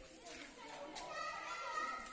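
Indistinct background voices of several people, some high-pitched and raised, with a light click about halfway through.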